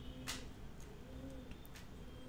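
Faint, low, repeated cooing of a bird in the background, short hoots recurring about once a second, with a brief click about a third of a second in.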